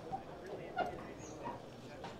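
A dog barking, with one short, loud bark a little under a second in and fainter calls around it, over a murmur of crowd chatter.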